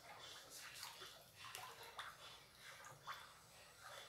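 Faint sloshing and swishing of a plastic ladle being stirred through a thin liquid soap mixture in a plastic tub, in short irregular strokes.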